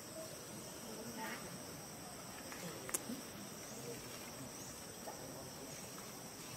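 Steady high-pitched drone of insects, with one sharp click about three seconds in.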